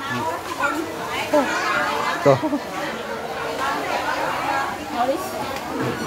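Background chatter of several people talking at once in a busy café, with no single voice standing out.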